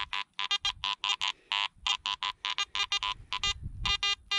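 Metal detector chirping rapidly as its coil is swept over ground, a string of short electronic beeps of changing pitch, about five a second, some low and some high. The detector is sounding off on scattered iron, with a small target among it.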